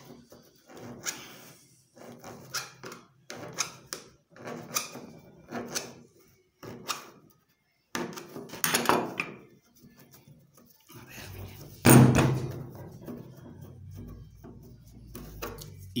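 A screwdriver pushing and scraping a wad of old rags down into an empty tin can, packing it tight, with irregular short scrapes and knocks against the can. The loudest knock comes in the last third.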